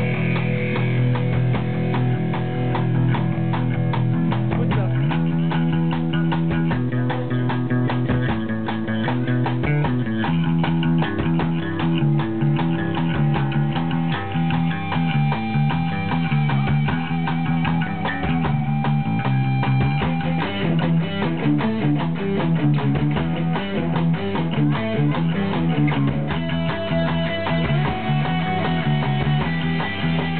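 Live rock band playing an instrumental passage: distorted electric guitar, a repeating bass-guitar line and drums, with no vocals.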